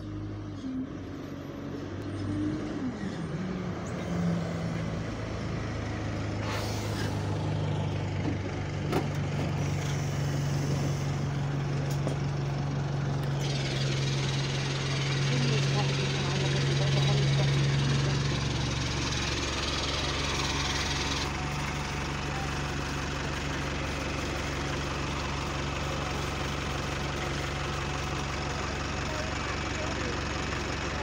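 Single-deck diesel bus drawing up to a stop, its engine note growing louder as it passes and then settling to a steady idle. A hiss of air, like the air brakes or doors, starts about halfway through and runs for several seconds.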